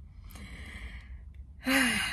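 A woman's long, breathy sigh out through the mouth, lasting about a second. Her voice comes in near the end as she starts speaking again.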